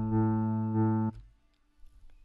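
Acoustic guitar C3 sample played through Ableton Live's Simpler with looping and a loop crossfade, so the note holds on instead of decaying, swelling slightly about every two-thirds of a second as the loop repeats. It cuts off suddenly just after a second in when the key is released.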